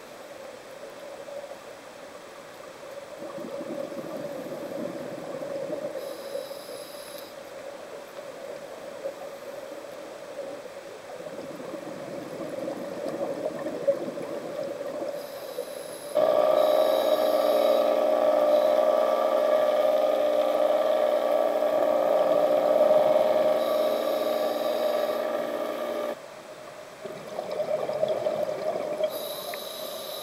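Underwater sound through a camera housing: scuba regulator breathing and bubbles, rising and falling in patches over a steady low hum. For about ten seconds in the middle, a much louder drone with several steady tones starts and stops abruptly.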